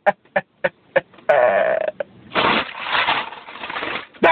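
Close-miked eating sounds: a run of short wet mouth clicks and smacks while chewing, then two longer, noisy, rasping stretches of chewing and breathing.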